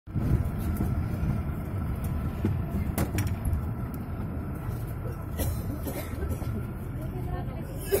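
Narrow-gauge toy train running along its track, heard from an open carriage doorway: a steady low rumble and rattle with a few sharp clicks, and voices murmuring in the background.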